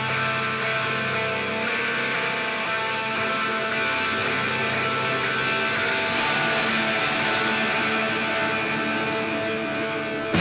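Live rock band song intro: electric guitars hold steady ringing chords, with a cymbal wash coming in about four seconds in and a few sharp hits near the end, just before the full band crashes in.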